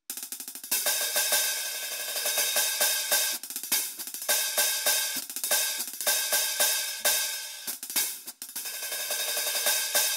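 Roland electronic drum kit played through its sound module: a steady hi-hat groove on the VH-14D digital hi-hat, with snare hits mixed in.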